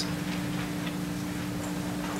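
Room tone: a steady low hum with a few faint ticks in the first second.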